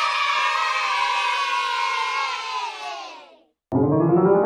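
A group of children cheering one long "yay" together, fading out after about three seconds. Piano music starts just before the end.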